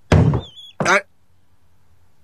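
A sudden thump, followed within the first second by two brief, wavering high-pitched squeaks.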